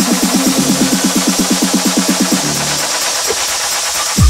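Electronic dance music from a DJ set: a fast, even pulsing synth line of about eight notes a second with no kick drum under it, thinning out about two and a half seconds in as the track breaks down.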